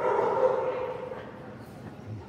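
A dog barking: one drawn-out, pitched bark that starts suddenly and fades over about a second.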